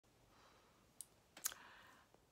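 Near silence broken by two faint short clicks about half a second apart, the second one louder.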